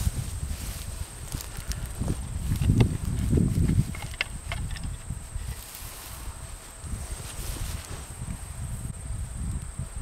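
A long-handled digging tool working into soil and straw mulch around a potato plant, with a few thuds and crunches in the first seconds, then quieter scraping and rustling as hands dig through the loose soil.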